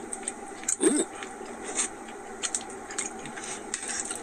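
A man biting and chewing a forkful of brisket and biscuit, with small mouth clicks over a steady background hum. A brief pitched vocal sound comes about a second in.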